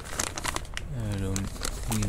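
Plastic packaging crinkling and rustling in irregular bursts as bagged spare parts are handled, with a short spoken sound about halfway through.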